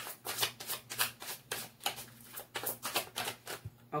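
A tarot deck being shuffled by hand: a quick run of crisp card clicks, about five a second, that thins out shortly before the end. This is the shuffle to draw a clarifying card for the reading.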